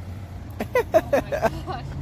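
Short spoken exclamations over a steady low background rumble.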